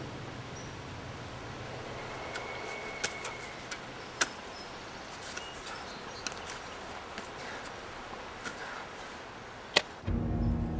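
A wooden stick whacking against a tree trunk: a string of sharp, irregularly spaced cracks, one strong hit about four seconds in and the loudest just before the end, over a steady hiss of woodland air.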